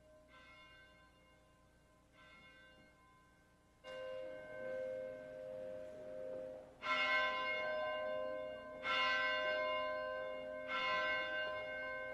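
A church bell tolling in slow single strokes, one every two to three seconds, each ringing on into the next. The first strokes are faint and the later ones, from about four seconds in, much louder.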